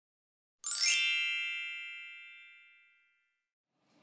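A single bright, shimmering chime sounds about half a second in, then rings out and fades away over about two seconds. It is a title-card sound effect.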